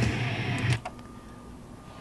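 Rock music from the Aiwa DS-50 stereo, falling in level as the volume is turned down and cutting off a little under a second in. It leaves a faint steady hum.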